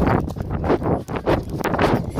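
Running footsteps, about three a second, with wind buffeting the phone's microphone and the phone jostling in a swinging hand.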